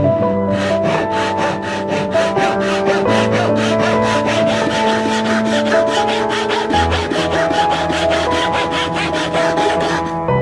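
Japanese handsaw cutting through softwood in rapid, even strokes, about five a second, the teeth rasping on each stroke.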